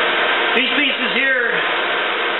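Hair dryer running steadily as the air blower of a homemade forge. A man's voice talks over it about half a second in.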